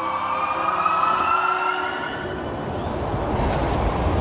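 Teleport sound effect: a slowly rising whine over a rushing whoosh, the whine fading out about two seconds in while the rush carries on.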